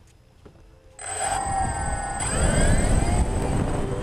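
DJI Phantom quadcopter's motors starting up about a second in, a high whine whose tones bend up and down in pitch as the rotors spin up, over a low rumble.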